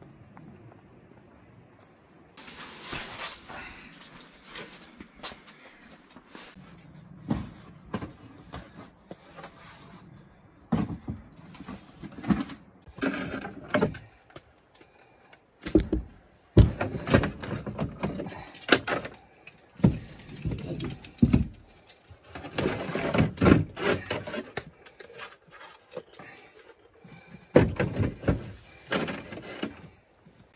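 Plastic gear being handled and set up: irregular knocks, clunks and rattles as a plastic tub, hose and frame are put in place, with tent fabric rustling a few seconds in.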